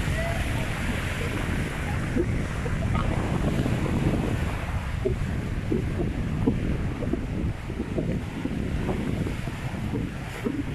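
Rough sea surf washing and breaking over the boulders of a breakwater, a steady rushing, with wind buffeting the microphone and adding a low rumble.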